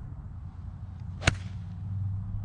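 A Ping Eye2 six iron striking a golf ball off the fairway: one sharp, crisp click about a second and a quarter in.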